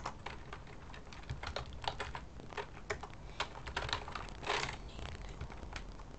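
Typing on a computer keyboard: a run of irregular key clicks, several a second, with a short scuffing burst of noise about four and a half seconds in.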